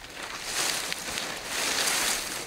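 Dry palm fronds rustling and crackling as they are handled and worked into a palm-thatch roof overhead. A continuous dry rustle with fine crackles.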